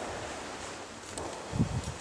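Outdoor background noise with wind on the microphone, and a brief low rustle about one and a half seconds in.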